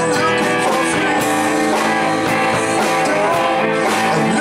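Live band playing a rock song, with guitar to the fore and regular sharp hits under it.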